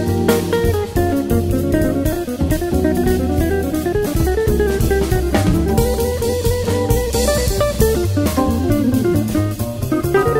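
Jazz music: a quick single-note guitar line moving in fast runs over a steady bass and a drum kit with cymbals.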